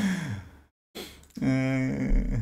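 A man's laugh trailing off into a sigh that falls in pitch. About a second later comes a short breath, then a held vocal sound at one steady low pitch.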